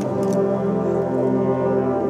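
A school wind band playing slow, sustained chords led by the brass, moving to a new chord at the start and again near the end.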